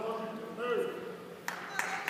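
A brief call from a voice, then scattered sharp hand claps beginning about one and a half seconds in, as spectators clap at a wrestling match.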